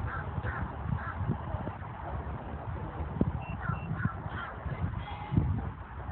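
A bird calling outdoors in short runs of two or three calls, heard near the start and again past the middle, with two brief high beeps between them. Beneath it is a low rumble and thumping of wind and handling noise from the moving phone.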